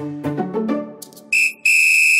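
Background music trails off, then a high, steady whistle tone sounds twice: a short blip, then a longer note of about half a second.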